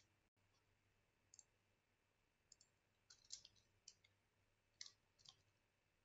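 Faint computer keyboard keystrokes, a few scattered clicks and short irregular bursts, over near-silent room tone.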